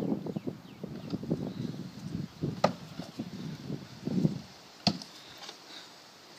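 Throwing knives striking a wooden target board: two sharp knocks about two seconds apart, near the middle and about five seconds in.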